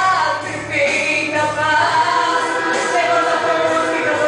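A woman singing a Christian gospel song through a hand-held microphone, amplified through speakers, over a recorded backing track with choir-like backing voices.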